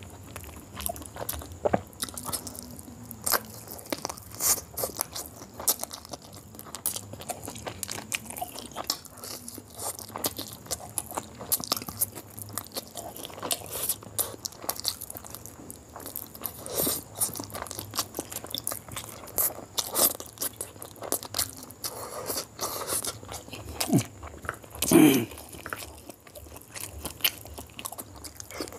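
Close-miked chewing of grilled chicken: irregular wet mouth smacks, clicks and crunches. A louder, lower sound lasting about half a second comes near the end.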